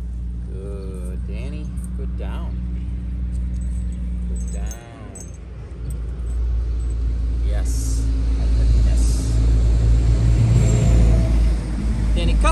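A motor vehicle engine running steadily with a low hum. It dips briefly about five seconds in, then runs louder through the second half. Faint voices come through now and then.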